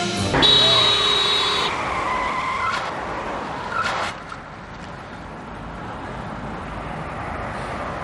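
Car tyres screeching as a Mitsubishi sedan brakes hard to a sudden stop, the screech loudest and lasting about a second and a half from half a second in: a near-accident. A short knock comes near the middle, then the car's engine runs quietly.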